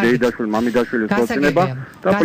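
Speech only: one person talking without a break on a radio talk programme.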